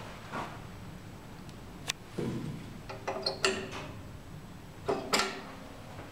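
A sharp click about two seconds in as the lift call button is pressed and lights up. A few more mechanical clicks and clunks follow, in two clusters, the first with a brief low rumble, as the old Schlieren traction lift responds to the call.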